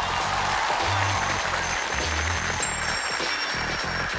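Stage entrance music: deep, stepping bass notes under a bright rushing wash, with a faint high ping about two and a half seconds in.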